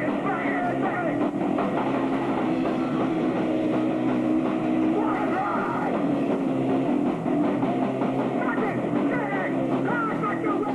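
A live rock band playing loud and without a break, with guitar and a drum kit. It is heard through the dense, roomy sound of a home-video recording.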